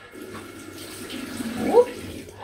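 Tap water running into a sink and splashed onto the face: a steady rush of water that grows louder toward the end.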